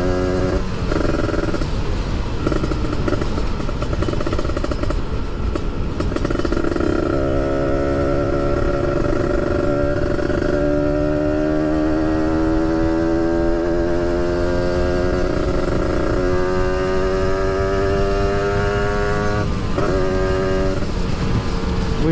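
Kawasaki Ninja RR sport bike's engine heard from the rider's seat on the move, its note climbing slowly in pitch between several brief breaks, as the throttle is worked through the gears. There is a steady rush of wind and road noise underneath.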